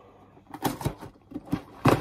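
Perforated press-in tabs on a cardboard LEGO box being pushed open: a few light clicks and taps of card, then a louder pop just before the end.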